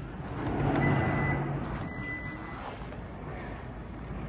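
2018 Kia Sorento's power tailgate closing on its electric struts, the motor running steadily. Two high warning beeps sound as it starts down: a longer one about a second in, then a shorter one.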